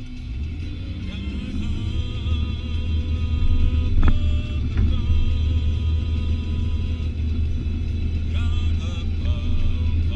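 Steady low rumble of a car driving, heard inside the cabin, with music playing over it. A short knock about four seconds in.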